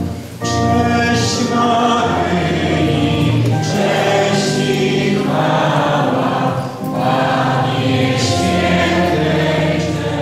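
A hymn sung by voices with church organ accompaniment. A held organ chord gives way to the singing about half a second in, with a short breath pause between lines about two-thirds of the way through.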